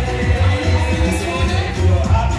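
A church chorus: voices singing over loud music with a strong, pulsing bass.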